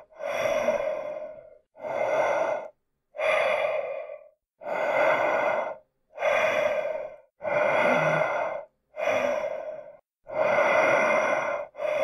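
Slow, heavy breathing of the kind used for Michael Myers behind his mask: about nine breaths in and out, each lasting a second or so, with short gaps between them in a steady rhythm.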